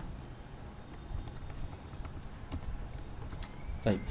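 Computer keyboard keystrokes: a scattered run of light, separate key taps as code is edited.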